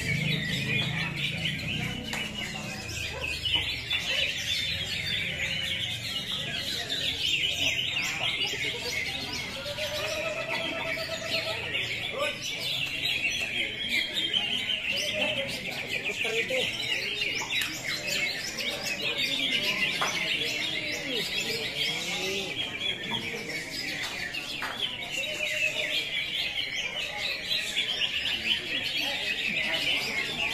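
Many caged cucak hijau (greater green leafbirds) singing at once: a dense, continuous chatter of overlapping chirps, trills and whistles with no break.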